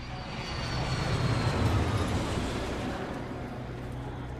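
Jet airliner flying past on its landing approach: engine noise that swells to a peak about halfway through and then fades, with a faint high whine falling slightly in pitch.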